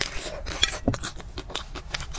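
A bite into a chocolate-coated ice cream bar, then chewing: a run of short, irregular crackles and wet mouth clicks.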